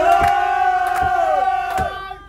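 A group of men singing loudly together, holding one long note that slides down and breaks off near the end, with a few hand claps about three-quarters of a second apart.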